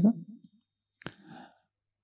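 A pause in a man's talk: his last word trails off, then a single small mouth click about a second in, followed by a faint breath.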